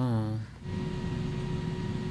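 A short hummed "mm-hmm", then from about half a second in a steady low drone with a faint held tone, the episode's opening soundtrack playing through the reaction.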